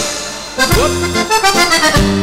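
Accordion playing a lively dance tune with the band's bass and drums. The music thins out briefly at the start, and the accordion, bass and drums come back in about half a second in.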